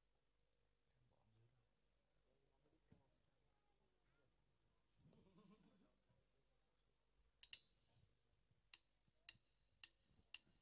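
Near silence, broken by a few faint, irregular ticks and taps in the second half.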